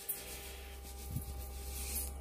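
Dry breadcrumbs pouring from a canister into a stainless steel bowl, a soft steady hiss, over the faint steady hum of an air fryer heating up.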